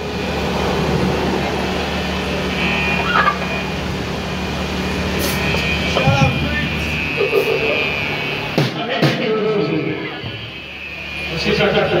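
Steady low hum from idle guitar amplifiers with scattered voices between songs; the hum cuts out about two-thirds of the way in, with a couple of sharp clicks.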